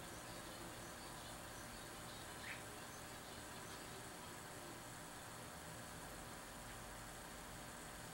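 Quiet room tone: a faint, steady hiss with one small tick about two and a half seconds in.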